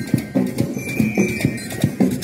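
Marching band playing outdoors: drums beating a steady, quick march rhythm, with high ringing bell-like notes over the beat.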